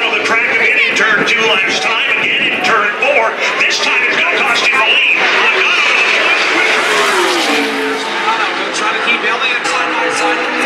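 Pack of NASCAR Cup stock cars with V8 engines passing on the track, their engine note dropping in pitch as they go by about seven seconds in, under voices.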